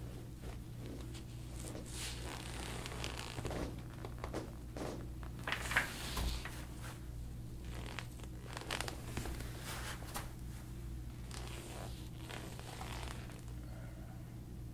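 Hands rubbing and kneading the skin and hair at the back of the neck and skull during soft-tissue work, giving irregular rustling and scratching. The loudest scrape comes about six seconds in, over a steady low hum.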